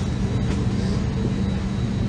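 Steady low hum of an Airbus A321 airliner cabin on the ground before takeoff, with a faint high whine over it.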